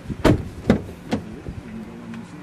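2015 Dodge Journey rear door opened by its outside handle: three sharp clicks and knocks from the handle and latch, about half a second apart, over a low steady hum.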